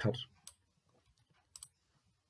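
Computer mouse clicks: a single click about half a second in, then a quick double click near the end.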